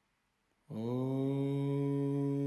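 A male Indian classical vocalist starts a long chanted note about two-thirds of a second in. He slides briefly up into pitch and then holds it steady, like the opening of a Vedic mantra.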